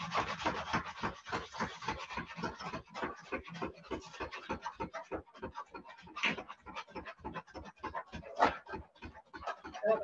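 Hand-pumped whipped cream maker being worked, its plunger churning cream in a fast, even rhythm of scratchy strokes, about five a second, with no let-up, the cream being whipped.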